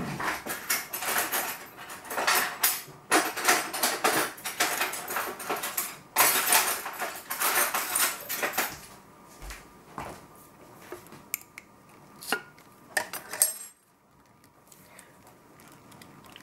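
A tight metal jar lid being wrestled with: the jar is gripped, twisted and knocked, with long stretches of rattling and scraping for most of the first nine seconds, then a few separate clicks and knocks.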